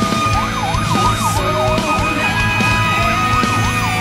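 Fire engine's electronic siren in a fast yelp, its pitch sweeping up and down about three times a second, over loud background music.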